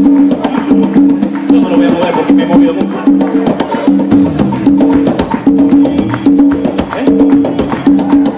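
Live blues band playing an upbeat, drum-driven number: a repeating low riff over drums and busy, clacking percussion.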